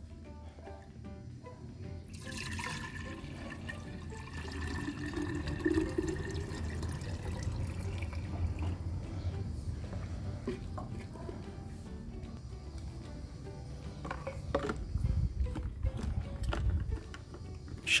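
Diluted oil-and-water mixture being poured from a plastic measuring jug into a plastic hand pressure sprayer bottle. The sound of the filling rises in pitch as the bottle fills. Near the end come a few plastic clicks and knocks as the sprayer head is handled and fitted.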